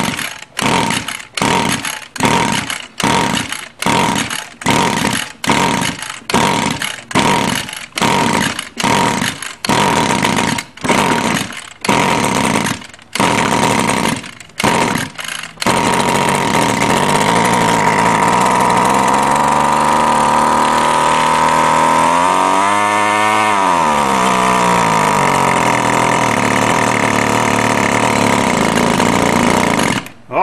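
Stihl two-stroke string trimmer being pull-started again and again, its recoil starter cord rasping about three times every two seconds for some fifteen seconds. The many pulls are needed because the engine is flooded. It then catches and runs steadily at wide-open throttle on a small squirt of fuel poured into the carburettor, its pitch sagging and recovering once partway through the run.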